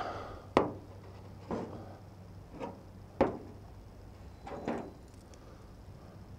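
A handful of separate knocks and clunks, about five, as empty Pringles cans and a hand tool are picked up and set down on a hard surface; the sharpest come about half a second in and about three seconds in.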